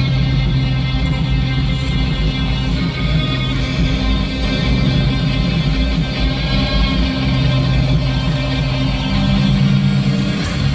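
A pop song with strummed guitar playing loudly over a car stereo inside the car's cabin, with the driver singing along.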